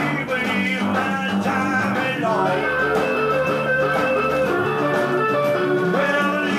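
Live blues-rock band recording led by electric guitar, played back from a vinyl LP on a turntable.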